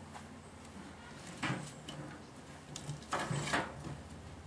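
Wooden beehive parts scraping and knocking as they are worked in the hive box: one short scrape about a second and a half in, then two more close together about three seconds in.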